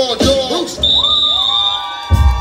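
Children shouting and cheering in a break in the dance music, with many short rising and falling cries. A steady high-pitched tone, like a whistle, comes in about a second in and holds almost to the end.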